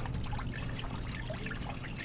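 Engine coolant trickling from the opened thermostat housing into a drain pan, a steady dribble.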